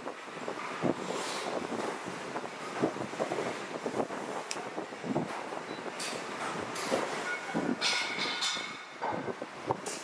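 Workshop noise: a steady hiss with irregular knocks and rattles throughout, and a brief higher squeal about eight seconds in.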